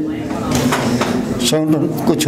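A man's voice holding one long, steady hesitation sound for about a second and a half, then going back into speech near the end.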